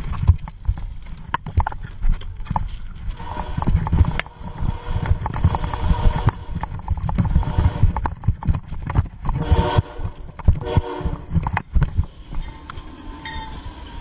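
A train coming through a railway tunnel, its horn sounding, loudest in blasts around the middle. Under it runs a constant rumble and knocking from a bicycle jolting along the track over the sleepers.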